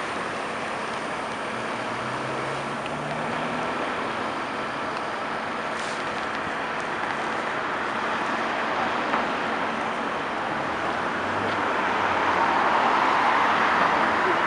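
City street traffic: a steady wash of tyre and engine noise from passing cars and trucks, growing louder as a vehicle passes near the end.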